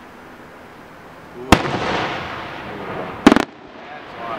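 Aerial firework shells bursting: a sharp loud bang about a second and a half in that trails off in a long echo, then a second, sharper double crack a little after three seconds that cuts off suddenly.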